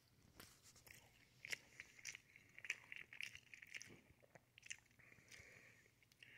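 Faint chewing: scattered soft mouth clicks of a person chewing a soft egg omelet bite.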